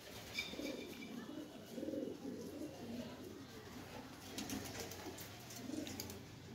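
Racing homer pigeons cooing, a string of low, repeated coos.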